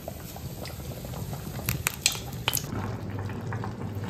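Water boiling in a steel pot on the stovetop, with a few light clicks about two seconds in.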